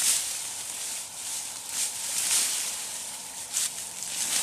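Dry, dead cucumber vines and leaves rustling and crackling as they are pulled by hand from a wire trellis, with irregular short crackles.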